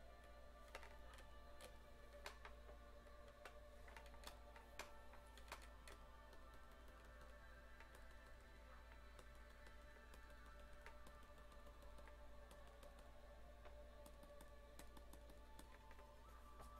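Faint background music: soft sustained tones, near silence overall. Scattered sharp clicks from the computer desk, mostly in the first six seconds.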